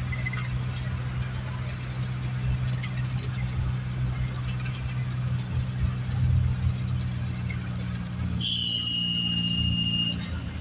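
Matatu minibus heard from inside the cabin, its engine and road noise droning steadily. About eight and a half seconds in, a loud, high, steady squeal starts and runs on for about a second and a half.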